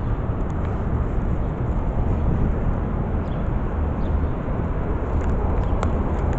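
Outdoor city street noise: a steady low rumble, with a few faint clicks near the end.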